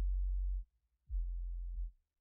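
Two low, steady electronic hum tones, each under a second long, with a short silent gap between them.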